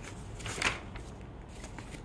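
A page of a printed paper booklet being turned: one short paper rustle a little over half a second in.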